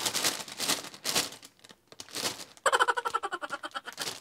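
Plastic vegetable bags crinkling and rustling as sliced onions and carrots are shaken out of them into a pot of water, with a faster, even crackling in the last second or so.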